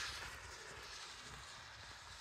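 Faint outdoor background noise: a low, steady hiss with no distinct events, growing slightly quieter.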